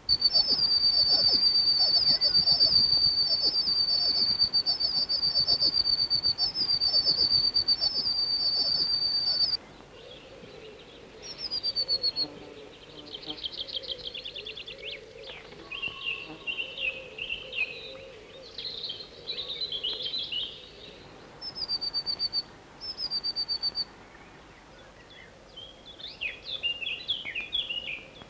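Tits calling: a loud, fast, high-pitched trilling run that cuts off abruptly about nine and a half seconds in. It is followed by quieter short high calls, buzzy note runs and twittering.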